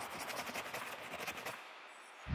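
Faint, fast scratchy crackling, a sound effect under the animated title, fading away to near silence about a second and a half in.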